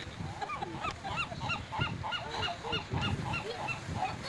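Birds calling in a rapid run of short, repeated calls, about five a second, some overlapping as if from several birds.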